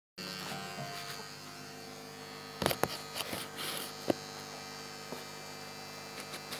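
Steady electrical hum and buzz from an electric guitar amplifier left on with the guitar plugged in. A few knocks and rubs from the camera being handled come about two and a half to four seconds in.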